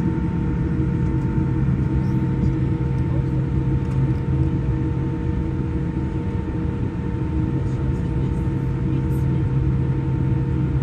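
Boeing 787 airliner's jet engines and cabin air heard from inside the cabin as a steady low hum with a few constant tones while the aircraft taxis slowly.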